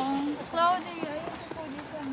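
A woman's voice in a few short utterances: one falls in pitch at the very start, another comes about half a second in, and the voice picks up again near the end.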